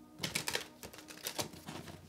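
A deck of tarot cards being shuffled by hand: a run of short, irregular card clicks and riffles, busiest in the first half second and again about halfway through.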